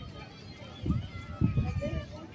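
Faint voices in the background, with a few short low murmurs close to the microphone.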